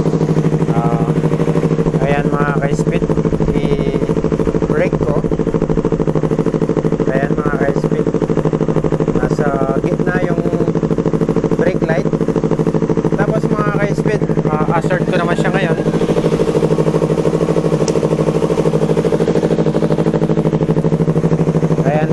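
Yamaha R3's parallel-twin engine idling steadily through an SC Project exhaust canister, at an even pitch with no revs.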